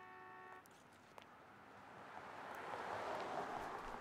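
A car approaching along the street, its tyre and engine noise swelling over about three seconds. A brief steady tone sounds right at the start.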